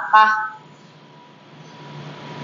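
A spoken word, then a pause of low background hiss with a faint steady high-pitched tone and a low hum underneath.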